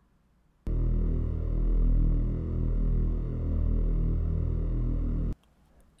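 A SuperCollider synth plays ten slightly detuned variable-duty sawtooth (VarSaw) waves summed around 40 Hz, giving a low buzzing drone with slow swells in loudness. The starting phase of each wave is randomized to smooth out the pop at the start. The drone starts about half a second in and cuts off suddenly about a second before the end.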